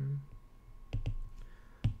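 Stylus tip tapping on a tablet's glass screen while writing: two sharp taps about a second apart, the second louder.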